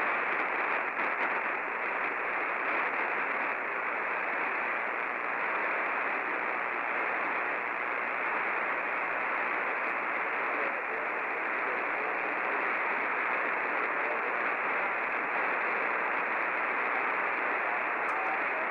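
CB radio receiver on single sideband with no station coming through: a steady, even hiss of static filling the radio's narrow voice band. The distant station's reply has faded out.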